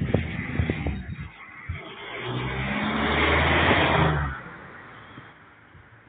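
A car passes close by, its engine and tyre noise swelling for about two seconds and then falling away quickly about four seconds in. Irregular knocks and bumps come in the first second or so.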